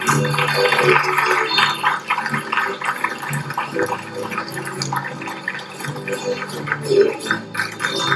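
Chilean folk music played live by an ensemble of strummed guitars and accordion, with a steady strummed rhythm.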